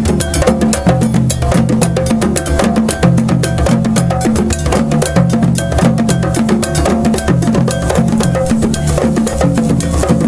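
Djembe hand drums playing a fast, steady rhythm together, with a struck metal bell keeping time over them.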